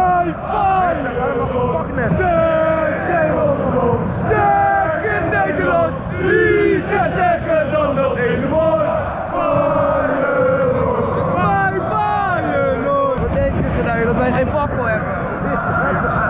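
Crowd of football supporters in a stadium stand singing and chanting together, many voices at once, loud and continuous.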